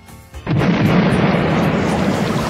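A recorded thunderclap breaks in suddenly about half a second in and rolls on as a loud, sustained rumble, with music under it.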